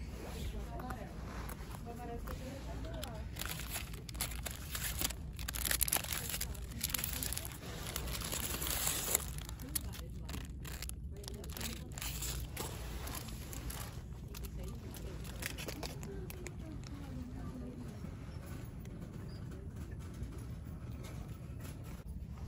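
Shop ambience: faint, indistinct voices in the background over a low steady hum, with plastic packaging crinkling as it is handled for a few seconds near the middle.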